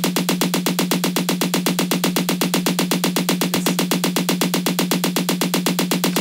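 Sampled snare drum from a sequencer, played as a fast, even run of about ten hits a second. Each hit is at a slightly different loudness because the MIDI velocity has been randomised.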